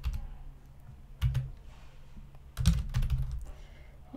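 Typing on a computer keyboard in short bursts of keystrokes. A couple of strokes come a little over a second in, and the busiest run comes between about two and a half and three seconds in.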